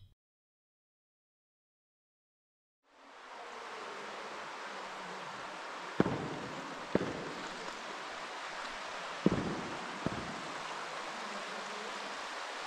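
Silence for about three seconds, then a steady rushing outdoor background fades in, with a few short soft knocks about six, seven and nine seconds in.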